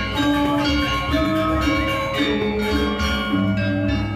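Balinese gamelan music accompanying a Rejang dance: bronze metallophones and gongs ringing in overlapping sustained tones that change every half second or so, with a deeper low tone coming in near the end.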